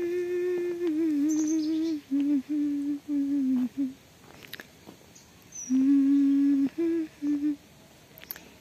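A woman humming a slow tune in long held notes. One phrase lasts about four seconds, then breaks off, and a second shorter phrase comes in about six seconds in.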